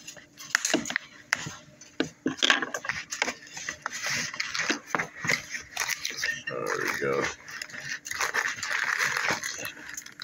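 A cardboard box and its plastic packaging being opened by hand, with many sharp clicks and tearing sounds, and a dense crinkling of plastic wrap near the end.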